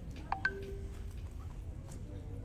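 Two quick electronic beeps, then a lower tone held for about half a second, over a steady low hum in the room.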